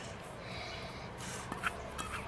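Coarsely crushed roasted nuts poured from a small metal bowl onto flour in a large metal bowl: a faint, soft rustle, with one light tap about one and a half seconds in.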